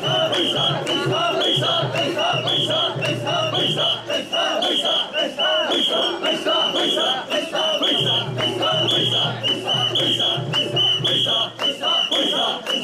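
A crowd of mikoshi bearers chanting loudly in unison to the rhythm of their steps, with a whistle blown in short sharp blasts about twice a second to keep time.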